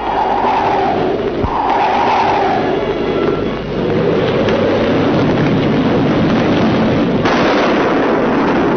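Loud, dense orchestral film score on a worn, noisy old optical soundtrack: a heavy, rumbling passage with two falling phrases early on and a low thump about one and a half seconds in, turning brighter near the end.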